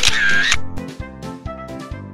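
A camera shutter sound effect at the very start, lasting about half a second, then background music with a steady beat.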